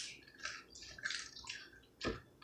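Faint wet mouth sounds of pizza being chewed: a string of short, soft smacks and clicks at an uneven pace.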